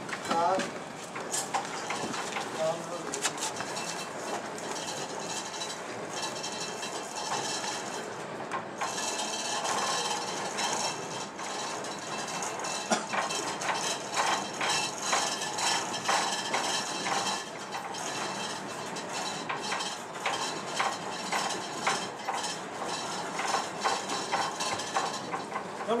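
Scattered light metallic clinks and knocks from handling a church bell's lifting straps, yoke fittings and tools, with low voices in the background.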